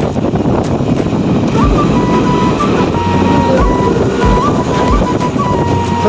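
Steady road and wind noise of a moving auto-rickshaw, with music coming in about two seconds in: a stepping melody over a repeating low beat.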